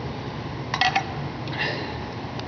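Two brief metallic clinks, the first and louder a little under a second in, the second about three-quarters of a second later, as the compression gauge and its fittings are handled, over a steady background hum.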